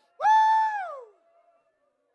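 A single high-pitched vocal cry, about a second long: it swoops up, holds level, then falls away.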